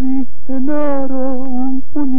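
A tango singer holding long sung notes with vibrato. The line breaks briefly about a third of a second in and again near the end.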